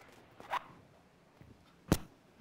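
Microphone handling noise as a head-worn mic is pulled off and a stand mic is set up: a short scraping rustle about half a second in, then a sharp knock near the end.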